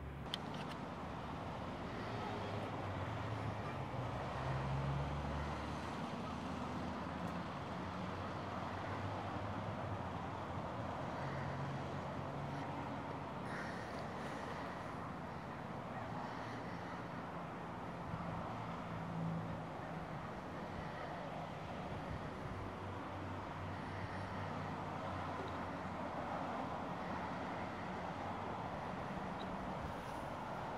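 Steady low road-traffic noise, with a slight swell of passing vehicles about five seconds in.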